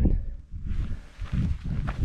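Footsteps of walking shoes on a dry, gritty peat path, with a scuffing rustle and two or three footfalls, the sharpest near the end.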